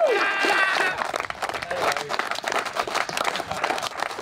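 A squad of AFL footballers clapping their hands in dense, steady applause. A few voices call out near the start.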